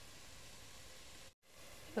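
Faint, steady sizzling of a tomato and onion masala frying in an open pressure cooker, cut by a brief dropout to silence a little over a second in.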